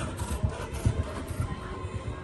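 Horse's hooves at a canter on a sand arena surface: dull thuds about two a second, over faint background music.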